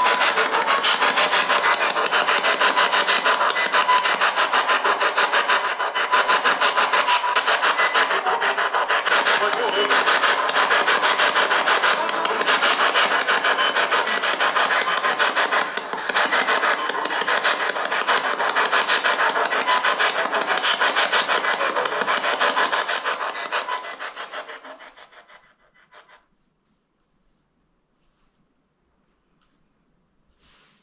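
Spirit box (S-Box) radio scanning through stations: loud, rapid, choppy static with clipped fragments of broadcast audio. It fades out and stops about 25 seconds in.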